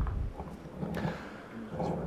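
A quiet pause in a meeting room: a soft low bump at the start, then faint, indistinct voice sounds over low room noise.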